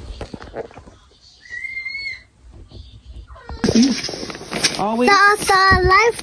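A young child's high-pitched wordless vocalising: a brief thin squeal about one and a half seconds in, then drawn-out, wavering whining cries from about three and a half seconds on.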